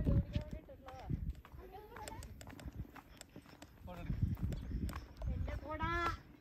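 Voices talking and calling, with footsteps of sandals on bare rock and low gusts of wind on the microphone.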